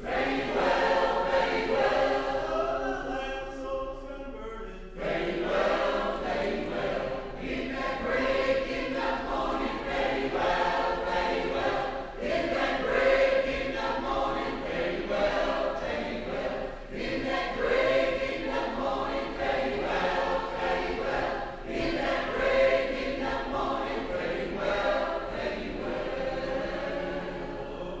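A choir singing, the sound growing fuller from about five seconds in.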